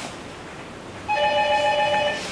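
An electronic telephone ringtone starts about a second in: one steady ring of several held tones.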